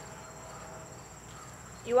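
Crickets trilling steadily in the background, a continuous high-pitched tone, with a voice starting at the very end.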